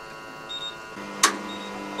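Electric driveway swing gate starting to open: a short high beep, then a steady low motor hum sets in about a second in, with a sharp click just after.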